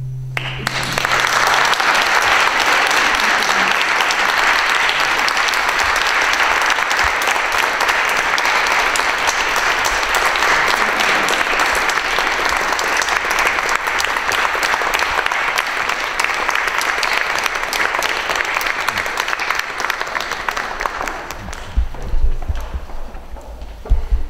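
Audience applauding steadily for about twenty seconds, then thinning out near the end. It starts about half a second in, while the last low note of the cello and piano is still dying away.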